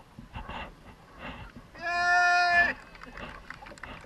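One loud, steady horn blast lasting about a second near the middle, over water splashing and lapping close to the microphone.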